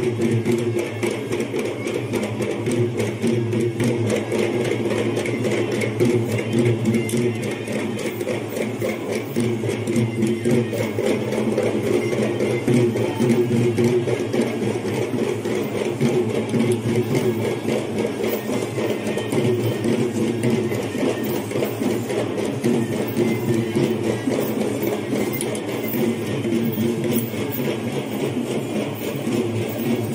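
Perahera procession music: fast, continuous drumming with steady sustained tones underneath, playing without a break.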